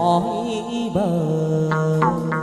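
Hát văn (chầu văn) ritual singing: a male voice holding a long, wavering melismatic vowel, accompanied by a đàn nguyệt (moon lute), with a quick run of plucked notes near the end.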